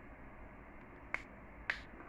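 Two sharp computer mouse clicks about half a second apart, past the middle, over a low steady hiss.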